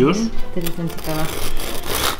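Serrated bread knife sawing back and forth through the crust of a freshly baked loaf, a rough scraping that gets louder near the end.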